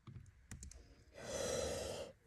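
A few soft computer-keyboard key clicks about half a second in, then a singer drawing an audible breath in the second half, just before she starts singing a punched-in vocal line.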